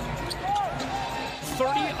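Basketball game sound on a hardwood court: the ball dribbling and sneakers squeaking in short rising-and-falling chirps, over steady arena crowd noise.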